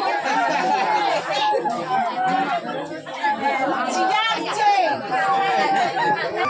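Bamboo flute playing a string of short held notes around one pitch, some sliding slightly, with several people chatting loudly over it.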